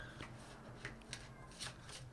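A deck of tarot cards being shuffled by hand: faint, soft card shuffling with a few light clicks of cards against each other.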